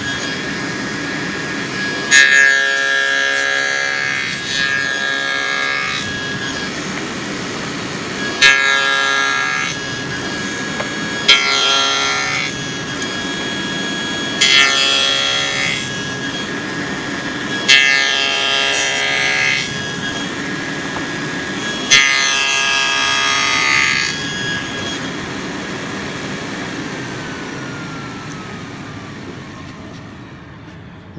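SawStop table saw with a dado head stack running while finger joints are cut through boards held upright in a jig. There are six cuts a few seconds apart, each a loud burst as the dado head bites into the wood over the steady run of the saw. Near the end the level drops and the pitch falls as the blade slows.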